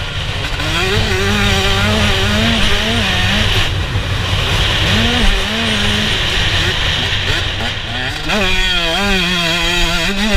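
2017 Husqvarna TC125's 125 cc single-cylinder two-stroke engine revving up and down under hard riding, heard from on the bike, with the pitch climbing steeply about eight seconds in as the rider opens the throttle.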